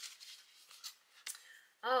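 A paper greeting card being opened and handled, with a few faint rustles and soft clicks.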